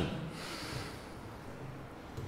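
A short breath out through the nose close to a handheld microphone, in the first second, then quiet room tone.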